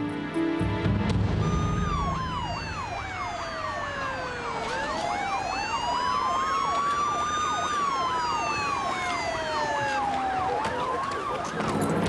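Two police car sirens sounding together, starting about a second and a half in: one in a slow rising and falling wail, the other in a fast yelp.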